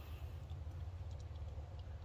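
A caulk tube being handled in a caulking gun, a few faint light clicks over a steady low rumble.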